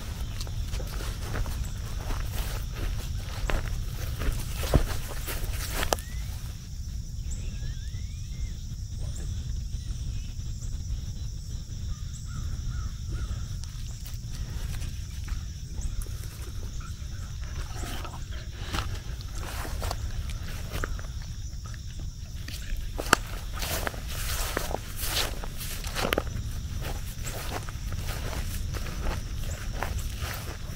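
Outdoor yard ambience: dogs' footsteps and rustling in grass, with scattered clicks and brushing sounds close to the microphone over a steady low rumble and a faint steady high hiss.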